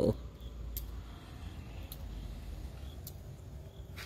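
Quiet background with a steady low rumble, a few faint clicks and a few faint, short high chirps.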